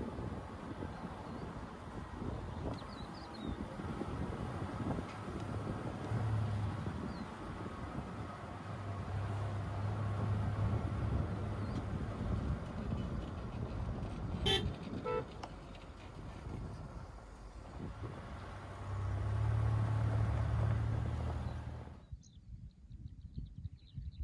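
An off-road vehicle driving on a sandy dirt track: steady engine and tyre rumble with wind noise, swelling louder a few times. A brief horn toot sounds about halfway through, and the driving noise cuts off to quiet shortly before the end.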